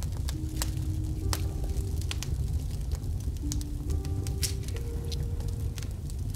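Wood fire crackling with irregular sharp pops over soft, slow relaxation music whose sustained notes change every second or so.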